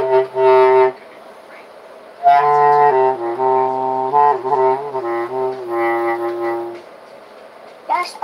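Bass clarinet played by a learner in slow, sustained low notes: a short note that ends about a second in, then a pause, then a longer phrase stepping between several pitches that stops about seven seconds in.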